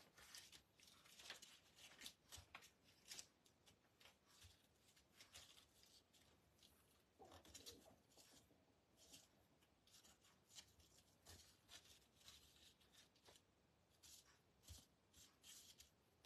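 Near silence with faint paper rustling and small ticks as a thin black cord is handled and tied into a bow on a paper card.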